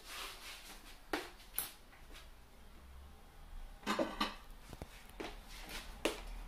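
A few scattered light knocks and clicks of kitchen handling, with a small cluster of them about four seconds in.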